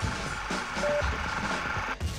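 Countdown-leader sound design: a short, steady electronic beep near the middle, one of a series about a second apart, over music with a hissing, noisy texture that builds and then cuts off abruptly at the end.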